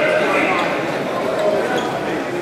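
Spectators and coaches calling out and shouting over one another during a wrestling match in a gym, with a few short knocks.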